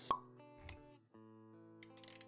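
Soft intro music with sustained notes and animation sound effects: a sharp pop just after the start, then a second hit with a low thump a little later. The notes briefly cut out about halfway, then resume with light clicks near the end.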